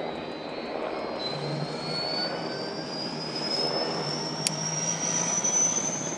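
UH-60 Black Hawk helicopter's twin turboshaft engines running up: a high whine rising steadily in pitch over a steady rushing noise, with one sharp click about four and a half seconds in.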